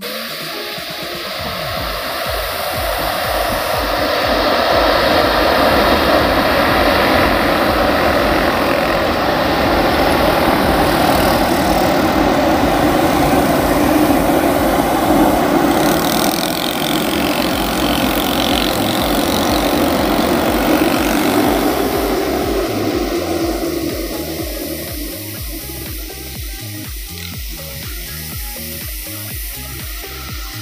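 Jet airliner engines at high thrust on the runway: a loud, steady rumble that builds over the first few seconds, holds, and dies away about two-thirds of the way through to a lower rumble.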